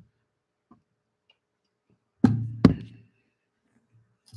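Two sharp knocks about half a second apart, a little over two seconds in, as of hard objects handled on a desk. Near silence around them.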